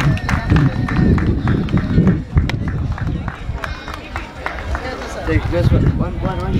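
Indistinct talking, with a man speaking into a handheld microphone, over a steady low rumbling noise and scattered clicks.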